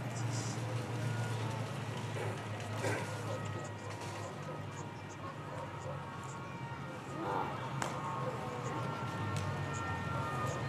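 Police motorcycle escort riding slowly past, a steady low engine hum, with faint voices from onlookers in the crowd.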